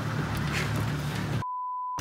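Steady low drone of the fishing boat's engine, then about one and a half seconds in all sound cuts out and a pure one-pitch broadcast censor bleep replaces it for about half a second, the standard TV bleep laid over a swear word.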